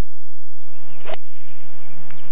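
A golf club strikes a ball once, a single sharp click about a second in, over faint background hiss and a low steady hum.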